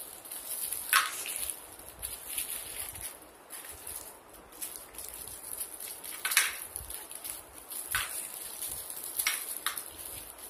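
Toffee wrappers rustling as they are twisted open by hand, with a few short, sharp crinkles about a second in, around six and eight seconds, and twice near the end.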